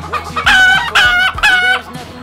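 A domestic hen calling three times, loud short squawks about half a second apart.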